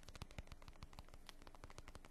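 Faint, quick fingertip tapping on leather, about a dozen light taps a second at an uneven pace.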